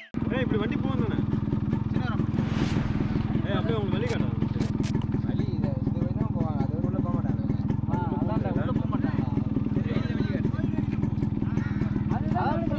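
A motorcycle engine runs steadily close by while men's voices talk over it.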